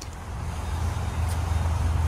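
Low rumble of a moving vehicle that grows louder and then cuts off abruptly at the end.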